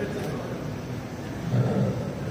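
A man's indistinct speech heard over a public address system in a large hall.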